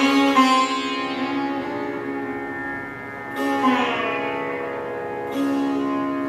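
Sitar playing a slow alap in raag Puriya Dhanashri, with no drum. There are three widely spaced plucked strokes: one at the start, one just past the middle and one near the end. Each is left to ring with a long sustain, and the first two bend down in pitch.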